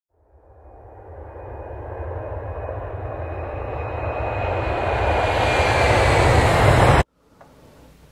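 A deep, rushing, rumbling noise that swells steadily louder for about seven seconds and then cuts off suddenly, with a faint thin tone gliding slightly downward over it. It is laid over the opening title card as an added sound effect.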